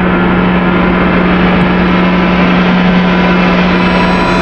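A loud, steady drone: a dense rumble with one held low tone, unchanging throughout.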